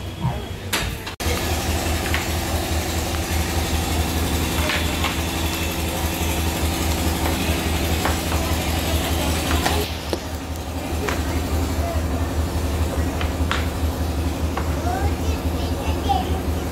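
Steady low mechanical hum with several fixed tones, starting abruptly about a second in and running on unchanged, with a few faint clicks over it.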